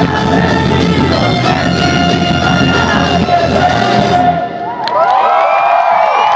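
A ska band playing live, loud and distorted on a phone's microphone, with the song ending abruptly about four seconds in. The crowd then shouts and cheers.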